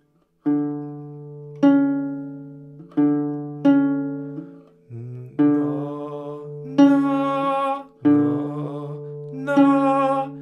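Nylon-string classical guitar playing an ascending major seventh, low D then C sharp, each note plucked singly and left to ring, the pair repeated several times.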